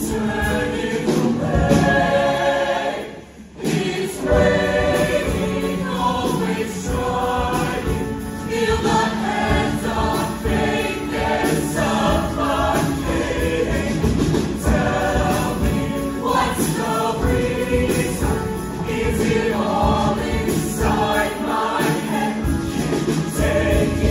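A show choir singing a loud up-tempo number in many voices over instrumental accompaniment with a strong bass line. About three seconds in, the music breaks off for a moment, then comes back in.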